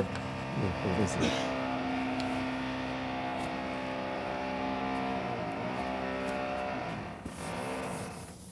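A steady pitched engine drone, coming up in the first second, dipping briefly in pitch about five and a half seconds in, and cutting off about seven seconds in.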